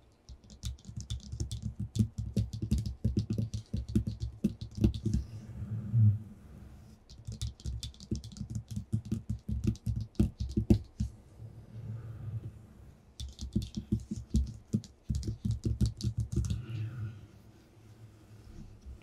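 Fingertips and nails tapping quickly on a paper-covered tabletop, in three flurries of rapid taps with short pauses between them.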